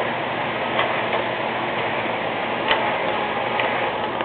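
Remote-control My Little Pony toy running: a steady whirring hiss with a few light clicks.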